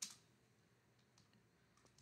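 Near silence with faint computer keyboard clicks: one sharper click at the very start, then a few fainter ones.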